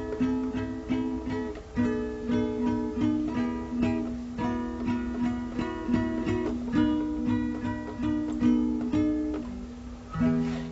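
Nylon-string classical guitar played fingerstyle: a steady run of plucked notes in a melodic passage, fading away just before the end.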